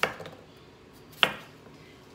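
Chef's knife slicing through a raw potato and striking a wooden cutting board twice, once at the start and again just over a second later, each a sharp knock that dies away quickly, cutting slices about half an inch thick.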